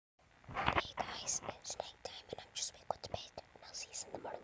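A woman whispering close to the microphone in short, breathy phrases.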